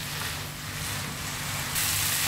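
Chicken and onion mixture sizzling in a non-stick wok on a high flame as it is stirred with a spatula, frying to dry the filling out. A steady hiss that grows louder near the end.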